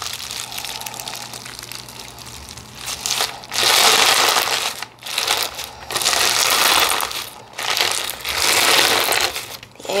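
Crunchy clear-base slime packed with lava rock pieces being stretched and squeezed by hand, crackling and crunching. It is softer at first, then about three and a half seconds in comes a series of loud crunching squeezes with short pauses between them.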